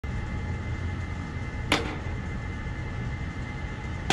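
Road bike rolling slowly under hard pedalling, with a steady tyre and drivetrain noise and one sharp metallic snap just under two seconds in: the chain skipping over the teeth of a worn cassette under load.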